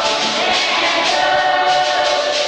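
A church choir of many voices singing a hymn together, holding long sustained notes.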